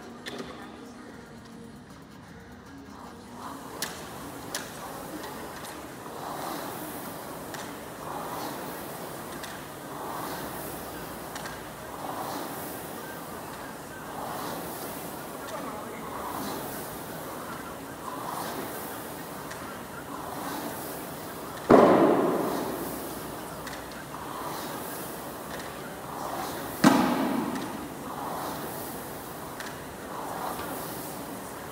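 Air rowing machine worked at a steady pace, its fan flywheel whooshing with each stroke about every two seconds. Two loud heavy thuds about five seconds apart stand out, each ringing on for a second or two.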